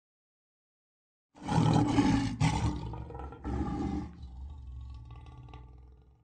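A lion's roar sound effect that starts about a second and a half in, comes in two loud pushes, then fades away.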